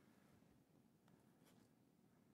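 Near silence: room tone with a low hum, and two or three faint clicks a little over a second in.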